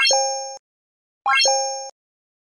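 Subscribe-button animation sound effect, sounding twice about a second and a quarter apart. Each time, a quick rising run of tones is followed by a ringing two-note chime that fades over about half a second.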